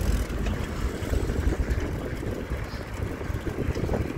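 Wind buffeting the microphone of a camera moving along a street: a steady, low rumbling noise.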